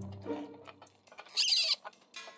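Hard plastic parts of a transforming robot figure scraping against each other in one short burst, about one and a half seconds in, as a limb is moved by hand.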